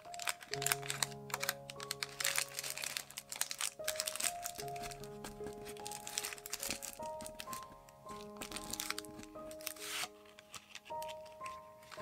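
Paper baking cups being handled and pressed around a small round form, crinkling and crackling in rapid, irregular bursts throughout, over soft background music.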